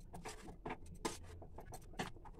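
A steel spoon scraping and clicking against a steel plate as shredded cabbage and spices are tossed together for momo filling. The sounds are faint, short and irregular.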